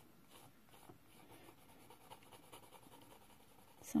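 Mechanical pencil shading on paper, pressed hard to lay in dark tones: a faint, continuous scratching of the lead over the page.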